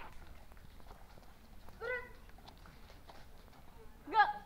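A woman's shouted marching-drill command: one short, high call about two seconds in, with a few faint taps around it.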